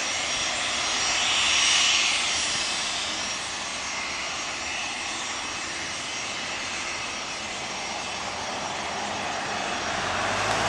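Embraer Legacy 500 business jet taxiing, its twin Honeywell HTF7500E turbofans running steadily at low power: a broad rush with a thin high whine over it, swelling slightly about two seconds in.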